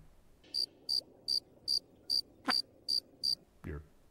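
Cricket chirping sound effect: eight evenly spaced high chirps, about two and a half a second, with a quick falling swoop about halfway through. It is the stock "crickets" gag marking an awkward silence where no answer comes.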